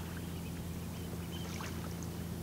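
Steady low drone of the passing bulk carrier's engine, an even hum without change in pitch or level.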